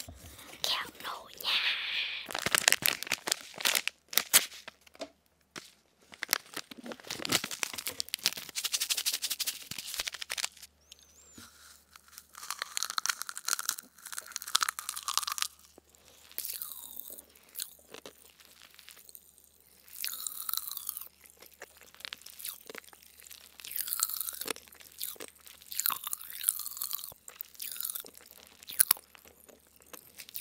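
Close-miked ASMR mouth sounds: popping candy crackling and being chewed right against the microphone, mixed with the crinkle of its paper packet, in irregular bursts.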